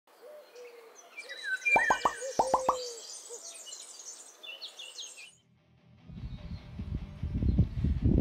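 Intro sound effects of bird calls and owl-like hoots, with a quick run of about six plopping pops about two seconds in; the calls cut off suddenly after about five seconds. A low rumbling noise follows, without the birds.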